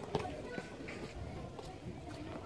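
Faint background voices and chatter around outdoor tennis courts, with one sharp knock of a tennis ball just after the start.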